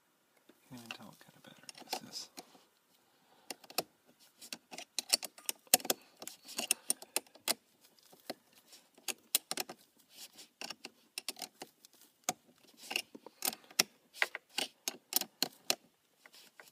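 Irregular metallic clicks and clinks from a hand tool and ring terminals being worked onto a car battery's terminal posts, fastening a battery-charger pigtail.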